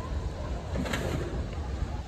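Outdoor street ambience picked up by a phone, a steady low rumble with a brief faint sound about a second in.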